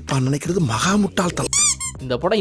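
Speech, then about one and a half seconds in a brief run of four or five quick, high-pitched squeaks.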